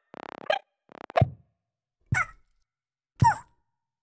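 Cartoon sound effects for animated birds: a soft whoosh, a click, then a run of short plops about a second apart, each with a little falling squeak on top.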